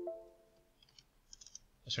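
A few clear ringing electronic notes, like a chime, fading out, then a run of light computer keyboard clicks as a short word is typed.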